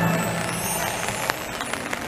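A hissing, whooshing sound effect from a castle projection show's soundtrack in a gap between music cues, with a faint rising whistle in its first second and a few light clicks.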